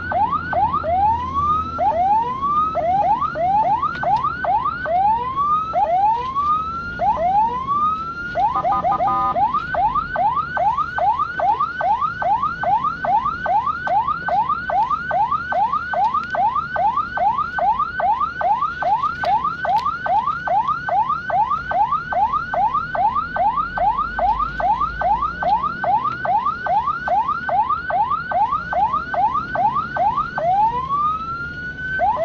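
Ambulance siren heard from inside the ambulance's cab. It starts with slower, uneven rising wails, breaks into a short steady blast about eight seconds in, then switches to a fast yelp of rising sweeps, about three a second.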